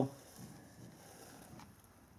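A quiet pause: faint, steady background hiss, with a small click about one and a half seconds in.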